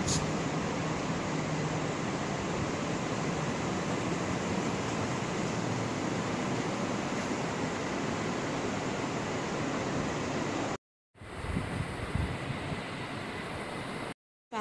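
Steady, even rushing background noise with no distinct events. It cuts out completely for a split second about three-quarters of the way through, then resumes slightly quieter.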